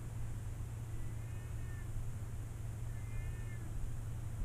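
Steady low hum with two faint, short animal-like cries that rise and fall in pitch, one about a second in and another about three seconds in.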